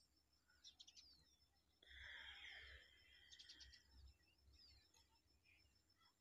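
Near silence: faint outdoor ambience with a few short, high bird chirps scattered through, and a soft rushing sound lasting about a second starting about two seconds in.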